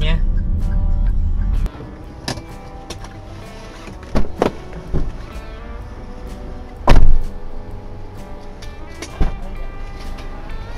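Background music over car cabin noise that cuts off after about a second and a half. Then come several knocks and one loud thump about seven seconds in, as the doors and rear hatch of the parked Daihatsu Xenia are handled.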